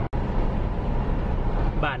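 Steady low road and engine noise heard inside the cabin of a moving car, with a brief cut-out of the sound just after the start.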